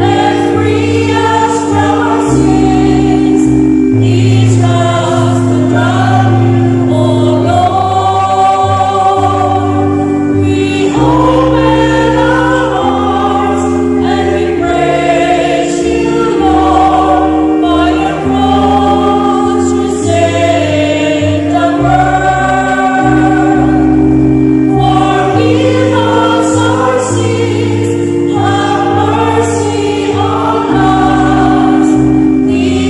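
Choir singing a slow Lenten entrance hymn with instrumental accompaniment: long held chords over a slowly stepping bass, the sung lines flowing on continuously.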